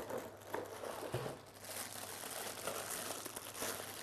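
Plastic bag wrapping crinkling and rustling as hands handle a packaged power supply and lift it out of a cardboard box.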